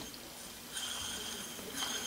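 Faint, steady whir of a small model steam engine's rough-cast flywheel spinning freely on its crankshaft in the newly reamed main bearing.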